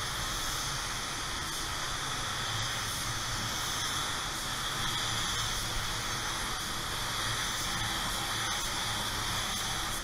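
Tekna gravity-feed spray gun with a 1.4 tip spraying clear coat: a steady, even hiss of air and atomised clear with the trigger held down, at a low pressure of around 22 psi. The hiss cuts off suddenly right at the end as the trigger is released.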